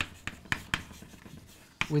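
Chalk writing on a blackboard: about four sharp taps of the chalk against the board in the first second, then fainter strokes.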